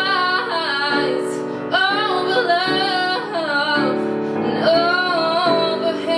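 A woman singing, with a digital piano playing held chords underneath. She sings in long phrases of wavering, sustained notes, with short breaks between them.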